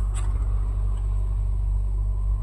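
A steady low background hum, with a faint soft click of a card being handled near the start.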